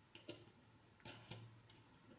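A few faint, sharp clicks from a plastic propeller and its prop nut being handled and threaded onto a quadcopter motor shaft. There is a quick pair near the start and three more about a second in.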